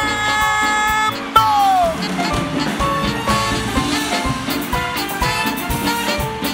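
Live dance band music. A held chord breaks off about a second in, a falling pitch glide follows, and then the band plays on with a busy, regular rhythm.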